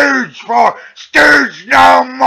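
A man's voice chanting a string of drawn-out, wordless calls in the style of a military marching cadence, several held notes in quick succession.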